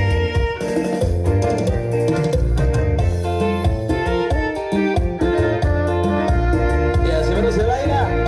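Live chilena mixteca played by a keyboard band through a PA: electronic keyboard melody over a steady, heavy bass.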